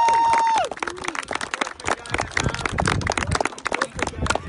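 A long high-pitched shout of "yeah" that breaks off about half a second in, then a small group of people clapping in a loose, uneven patter.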